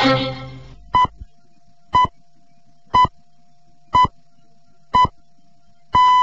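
Broadcast time signal: five short pips at about 1 kHz, one every second, counting down to the hour. The longer final pip begins right at the end. The last of a music passage fades out at the start.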